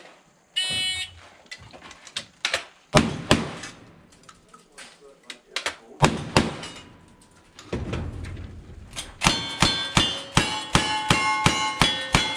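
A shot timer beeps, then a cowboy action shooter fires at steel targets: a few loud shots with pauses between them. Near the end comes a quicker string of shots, about two a second, each followed by steel plates ringing.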